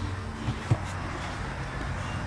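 Steady low hum of the workshop background, with a single short low knock about a third of the way through, like the camera or a part being bumped while it is carried to the bike.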